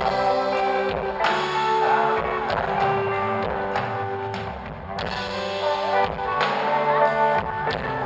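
Live band playing an instrumental passage on electric guitar, electric bass and drum kit, with regular drum hits.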